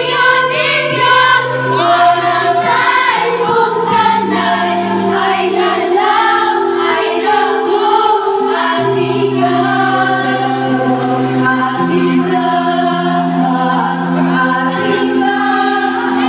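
Several women singing together in harmony over a backing track, with long held bass notes that shift every few seconds.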